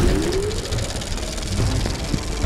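Sound-effect van engine running with a steady low rumble, opening on a sharp hit, with a short rising tone in the first half-second.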